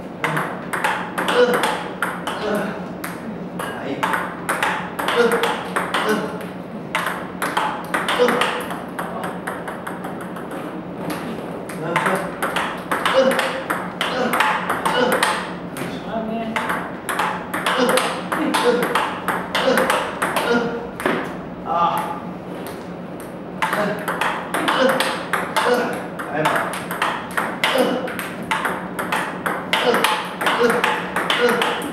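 Table tennis balls in self-fed multi-ball practice: a rapid run of clicks from balls struck by the paddle and bouncing on the table, several a second, with two brief lulls.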